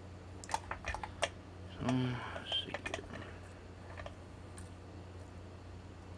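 Small sharp clicks and taps of metal being handled: a brass padlock being taken out of a bench vise and a lock pick and tension wrench set in its keyway. A cluster of clicks comes in the first second or so and a few more just before the three-second mark; the second half is quiet.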